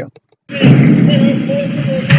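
Police body-camera audio played back, starting about half a second in: muffled, rumbling noise with the top end cut off, containing a faint distant bang that is held to be the first of two suspected rifle shots.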